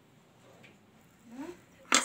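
Quiet room tone, with a brief faint voiced sound a little past the middle and a woman's voice starting right at the end.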